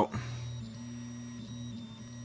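A 3D printer's stepper motors whining as the print head moves: a low steady hum with a higher tone that steps up in pitch under a second in and drops back near the end as the moves change.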